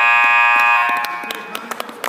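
Scoreboard buzzer at a wrestling mat sounding a loud, steady tone that cuts off about a second in, ending the period as the clock runs out. Scattered handclaps follow.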